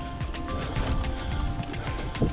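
A mountain bike's rear freehub ratcheting in fast clicks as it coasts, with the bike knocking over the rough trail, under background music.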